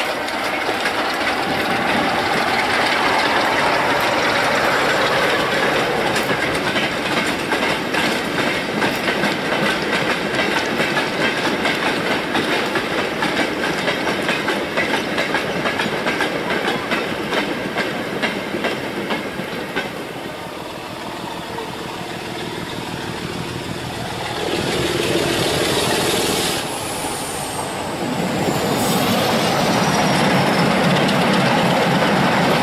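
Class 47 diesel locomotive passing, followed by a long train of four-wheeled goods vans clattering rhythmically over the rails. The clatter fades after the last van goes by, and near the end a second diesel locomotive's engine grows louder as it approaches.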